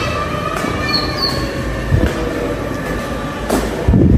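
Footsteps going up a tiled stairway with a few knocks, over a steady background of mixed faint tones; the loudest sound is a low thump from the phone being handled near the end.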